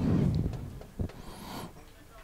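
Breath on a close commentary microphone: an exhale blows on the mic at the start, a single knock follows about a second in, then a short inhale.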